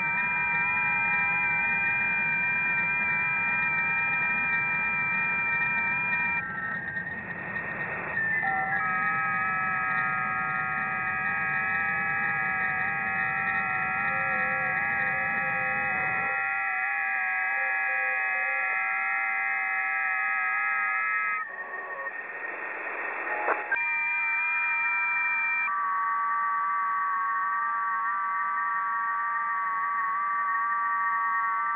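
Electric guitar noise fed through effects pedals and an amplifier: several steady held tones layered into a drone chord that shifts a few times. A low rumble underneath drops out about halfway, and a short stretch of hiss comes about two-thirds of the way through.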